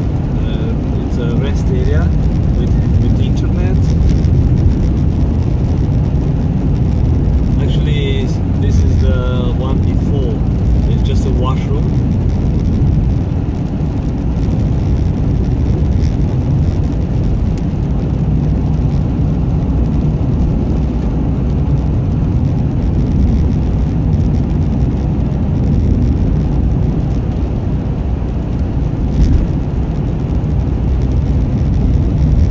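Steady low road and engine rumble inside a car's cabin, a 4x4 running on winter tyres over a snow- and ice-covered highway.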